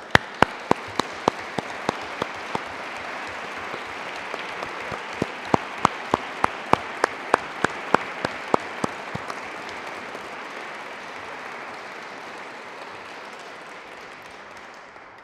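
Audience applauding, with a few loud single claps close by at about three a second. The applause dies away over the last few seconds.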